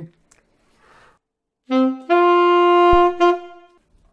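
Alto saxophone playing a short demonstration phrase from the opening of a grade 2 exam piece: a brief lower note about two seconds in, then a longer held higher note that stops just before the end.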